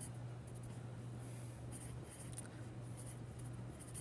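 Pencil writing numbers on lined paper: faint scratching strokes, over a steady low hum.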